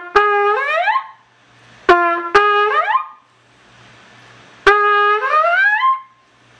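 Trumpet playing doits three times. Each is a short note followed by a held note that slides smoothly upward in pitch, played with the valves pressed halfway down while the lips push the pitch up.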